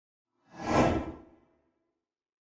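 A single whoosh sound effect for the logo animation, swelling quickly and fading within about a second, with a low rumble underneath.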